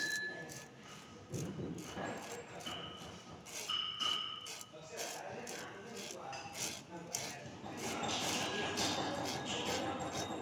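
Fingers rubbing powder through the wire mesh of a metal sieve, an uneven scratchy rasping with small ticks, breaking down lumps of the powder.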